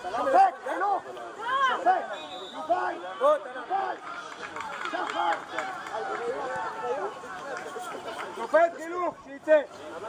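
Several voices shouting and calling out over one another at a youth football match, short high calls rising and falling in pitch.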